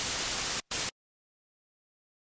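Loud hiss of static that cuts off abruptly just over half a second in, returns in one brief burst, then stops dead into silence.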